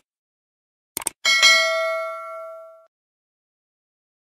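Subscribe-button animation sound effect: a quick double mouse click about a second in, then a bright notification bell ding that rings out and fades over about a second and a half.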